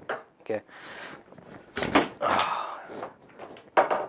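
The inner tube of a range pole is yanked out of its outer tube by hand. It breaks free with a sudden knock about two seconds in, slides out with a scraping rub, and a sharp knock follows near the end.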